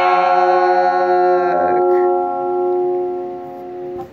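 Final chord on an electric guitar ringing out, its upper notes dying away and the whole chord slowly fading, before it cuts off abruptly at the end.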